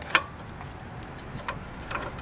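A few light metal clicks and taps as a steel C-clamp is handled and set against a brake caliper, the sharpest one just after the start.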